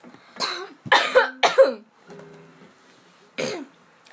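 A young woman coughing in four short bursts, three close together in the first two seconds and one more near the end, with a faint acoustic guitar note ringing in the gap.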